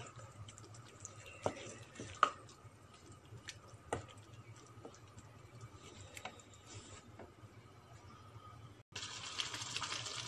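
Ground-meat and tomato-paste sauce being stirred in a frying pan: faint, with scattered light clicks and scrapes of the stirring utensil against the pan. After a short dropout near the end, a steady sizzling hiss comes up.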